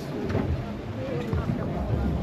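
Faint, indistinct voices over a low, steady rumble.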